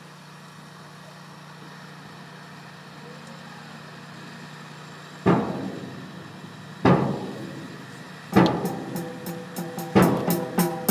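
Marching band playing: after a few seconds of low steady background, two loud accented hits ring out about five and seven seconds in, then the band and drums come in with a fast rhythmic passage near the end.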